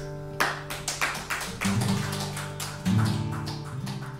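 Acoustic guitar played percussively: a steady run of sharp taps on the guitar body, about four a second, over the fading ring of a held chord, with low bass notes coming in about one and a half seconds in and again near three seconds.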